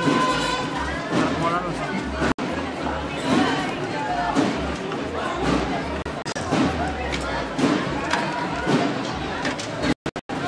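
Several people's voices overlapping, with no one voice clear above the rest. The sound drops out briefly about two and a half seconds in.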